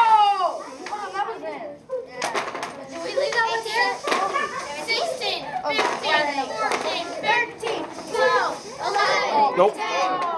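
A group of young children talking and calling out over one another, several voices overlapping.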